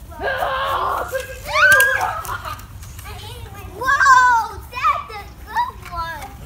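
Young children playing, with high-pitched shrieks and calls whose pitch swoops up and down; the loudest cries come about two and four seconds in.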